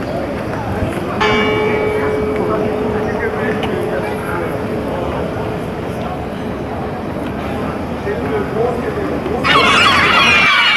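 A church bell struck once about a second in, its hum ringing out and fading over several seconds over the murmur of a busy town square. Near the end, a flock of gulls calling loudly.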